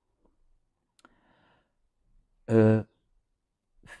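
A pause in a man's speech: a faint click about a second in, then a short held 'eh' hesitation sound from the same voice, before he speaks again near the end.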